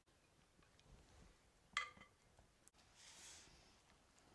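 Near silence: room tone, with one faint, brief ringing clink a little under two seconds in and a faint soft hiss a second later.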